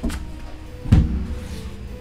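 Soft background music. About a second in there is a thump, and the tarot deck is spread out across the table.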